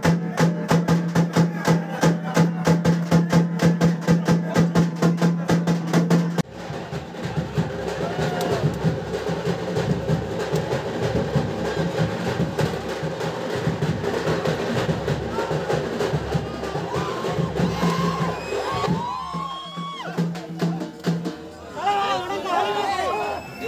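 Fast, steady drumming over a held low tone, cut off suddenly about six seconds in, then a crowd shouting and cheering, with voices rising over the din near the end.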